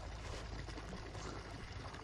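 Faint, steady background hiss of open-air ambience, with no distinct events.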